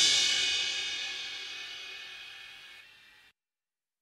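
Crash cymbal from a Yamaha arranger keyboard's drum track ringing out after a style's closing hit, fading steadily away to silence about three seconds in.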